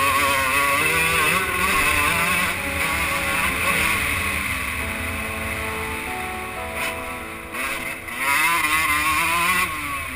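2003 Suzuki RM125 single-cylinder two-stroke motocross engine run hard over rough ground, its pitch rising and falling with throttle and gear changes. It eases off through the middle, then surges loudly again near the end before dropping away.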